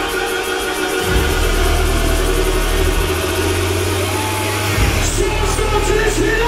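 Loud club music from a DJ set through a nightclub sound system. A heavy sustained bass comes in about a second in and breaks briefly near the end.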